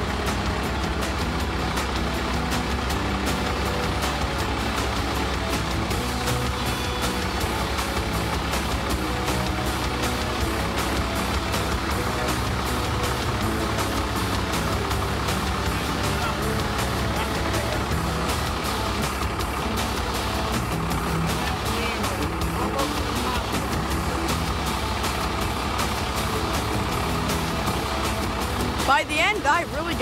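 A mobile crane's diesel engine running steadily while hoisting a bundle of rebar, under background music. A voice is heard briefly near the end.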